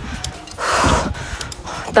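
A cyclist's heavy breath, close on the phone's microphone: one sharp, noisy gasp of air starting about half a second in and lasting about half a second.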